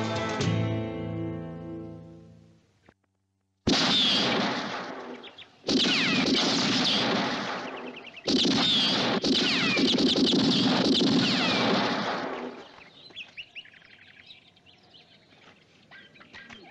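Movie sound effects of revolver shots: about four sharp reports a few seconds apart, each trailing into a long whining ricochet. Before them the credit music fades out, and after them faint birdsong is heard.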